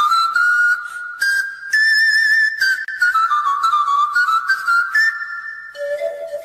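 Pan flute playing a slow instrumental melody with vibrato: the notes step upward, then a phrase falls away. Near the end a lower, held pair of notes comes in.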